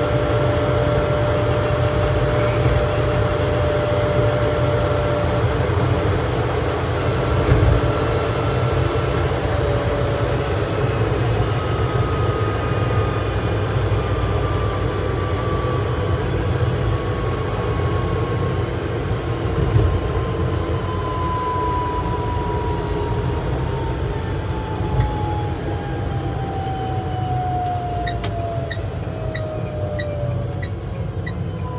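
Inside the cabin of an Opel Rocks-e electric microcar on the move: steady road and tyre rumble with the electric drive's whine, which in the second half falls steadily in pitch as the car slows. A light regular ticking, about once a second, starts near the end.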